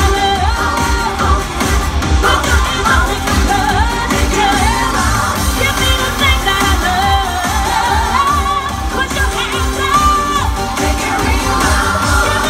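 Pop song sung live into microphones over amplified backing music with a steady beat.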